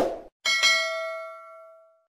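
Subscribe-button animation sound effect: a short click-like burst at the start, then about half a second in a single bright bell ding that rings on and fades away over about a second and a half, a notification-bell chime.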